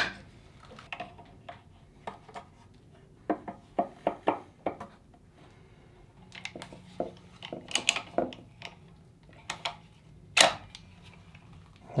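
Scattered clicks and clinks of brass plumbing fittings being handled and threaded together as a shutoff valve is fitted to a water filter's outlet, with one sharper click about ten seconds in.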